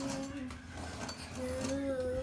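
A child's voice counting slowly in long, drawn-out tones, twice, with light clinks and knocks of things being handled close by.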